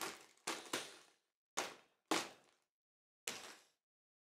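Handling noise at a table: about six short, light knocks and taps, irregularly spaced, as a sauced chicken wing is picked up from a bowl.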